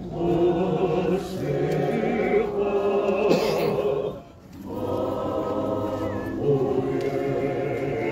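A crowd of voices singing together in chorus, with a short break about four seconds in before the singing picks up again.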